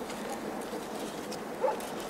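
A dog barking once, a short, sharp bark about one and a half seconds in, over a steady background hiss.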